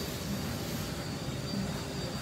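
Steady background hum and hiss of a large shop building, with no engine running and no clear events.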